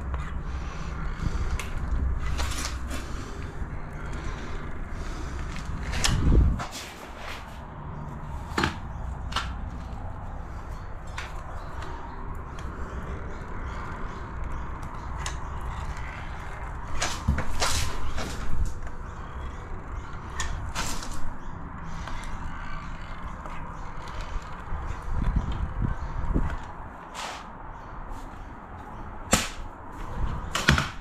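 Caulking gun being squeezed to lay a bead of silicone along a wall-floor joint: irregular clicks and creaks from the trigger and plunger, with a few louder knocks, over a low steady rumble.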